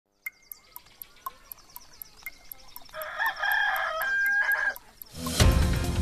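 Ticking, about four ticks a second, as the countdown clock runs to seven o'clock. A rooster crows over the ticks from about three seconds in, and just after five seconds the programme's theme music starts loudly.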